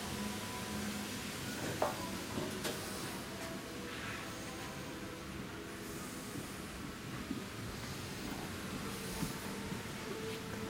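Steady low hum and hiss of a cruise ship's interior with faint background music, broken by a few light clicks.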